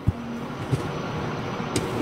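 Street traffic noise: a steady hiss of passing vehicles, with a few small knocks, one near the start and two more later.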